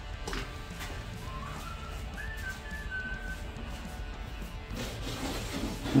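A man whistling a short tune of a few notes, stepping up in pitch and then back down. It starts about a second in and stops a little past halfway.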